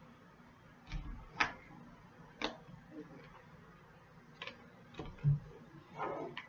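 Tarot cards being cut and handled on a table: a handful of irregular sharp clicks and soft knocks, with one duller thump about five seconds in.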